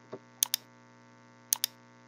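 Computer mouse button clicking: two pairs of short sharp clicks about a second apart, as the mouse is used to work the CAD program.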